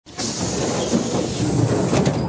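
Passenger train running along the track: a steady rumble with a high hiss.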